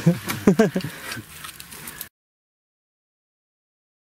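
A man's voice briefly with some light noise behind it, then the sound cuts off abruptly to dead silence about two seconds in.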